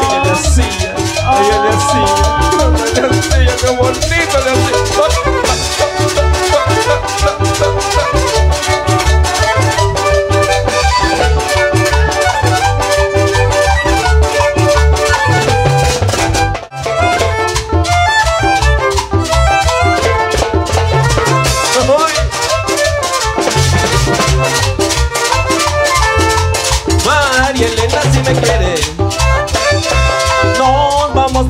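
A Salvadoran chanchona band playing cumbia without singing: violins carry the melody over drums and percussion. The music drops out for a moment a little past halfway.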